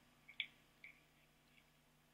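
A few faint, light clicks in the first second as picture-hanging wire is handled and snipped with a wire cutter, then near silence.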